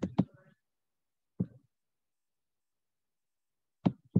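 Near silence: dead air broken by a brief faint click about a second and a half in and another short click just before the end.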